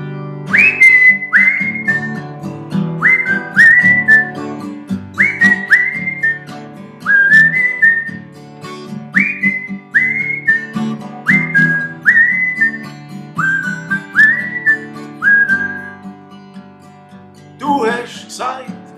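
Acoustic guitar playing chords while a man whistles the melody over it in short phrases of two or three notes, each note sliding up into pitch; the whistling stops a couple of seconds before the end, leaving the guitar.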